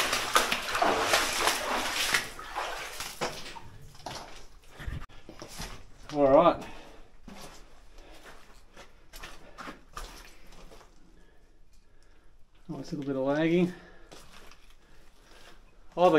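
Footsteps sloshing and splashing through shallow water and mud along a mine tunnel, heavy at first, then thinning to scattered steps and crunches. Two short bursts of voice break in, one about six seconds in and one near the end.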